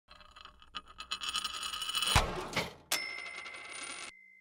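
Animated logo sound effect: a quick run of rattling, jingly clicks that builds up, a sharp hit about two seconds in, then a second hit with a high ringing chime-like tone that fades near the end.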